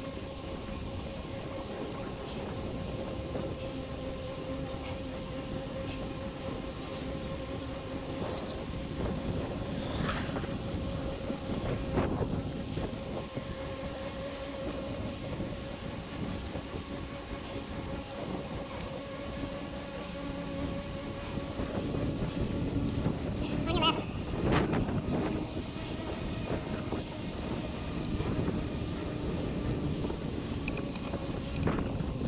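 Sped-up recording of a bicycle rolling along a paved trail: continuous tyre and wind noise with a steady hum, pitched up by the speed-up. Around three-quarters of the way through comes a brief high-pitched squawk, the rider's call of "on your left" while passing, made squeaky by the speed-up.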